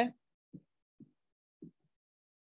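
Three soft, dull keyboard keystrokes about half a second apart as a table name is typed.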